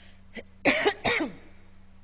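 A woman coughing and clearing her throat in two quick bursts, about a second in, pausing her speech.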